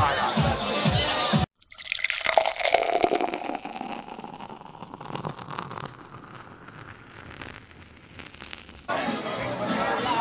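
Music and market chatter cut off abruptly about a second and a half in. A liquid sound follows, pouring and fizzing, that fades away over several seconds. Music and voices come back near the end.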